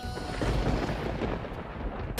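Dramatic background score built on a low, thunder-like rumbling sound effect that swells about half a second in.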